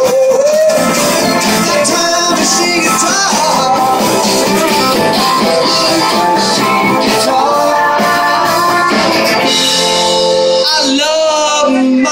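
A live rock band playing, with electric and acoustic guitars, and a voice singing near the end as the song draws to its close.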